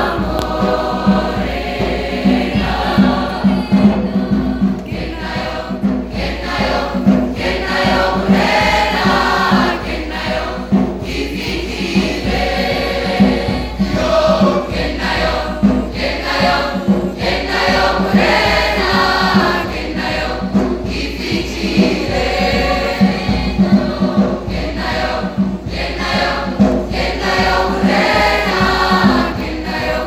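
A mixed school choir of boys' and girls' voices singing a song in harmony over a steady low beat.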